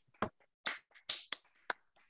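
Scattered hand claps from a few people, heard through a video call: about five sharp, irregular claps with dead silence between them.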